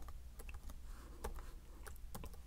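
A few faint, irregular computer keyboard keystrokes as text is typed into a chat box.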